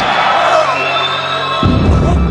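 Action-film soundtrack of a kickboxing bout: music over an arena crowd cheering, with a heavy low impact sound about one and a half seconds in.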